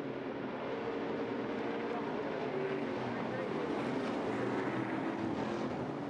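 A pack of Stadium Super Trucks' V8 engines running at race speed. Several engine notes overlap and shift in pitch as the trucks accelerate and pass.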